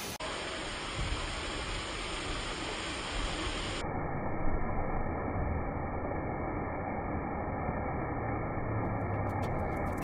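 Steady rushing noise of outdoor water-park ambience, water running and spraying, with no distinct events. It turns duller from about four seconds in, and faint clicks come in near the end.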